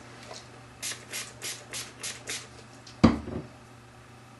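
Six short rubbing strokes, about three a second, as makeup is worked on with a brush or sponge, then a single sharp knock near the end, the loudest sound.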